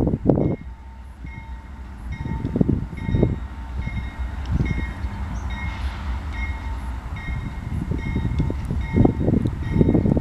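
A Union Pacific freight train led by GE AC4400-series diesel locomotives approaches from far down the line with a steady low rumble. A thin steady tone comes in about two seconds in, and faint high dings repeat about once a second. Gusts of wind buffet the microphone, strongest at the start and near the end.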